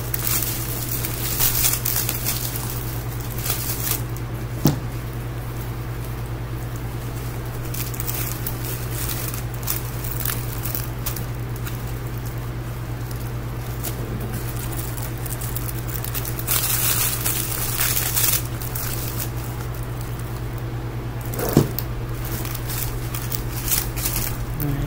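Clear plastic wrap crinkling and rustling as it is handled and wrapped around a boxed teddy bear, louder in a couple of stretches, with two sharp clicks, one about five seconds in and one near the end. A steady low hum runs underneath.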